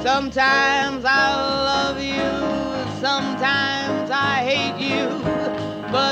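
Female jazz singer holding and bending notes with a wide vibrato, accompanied by a piano trio of piano, bass and drums.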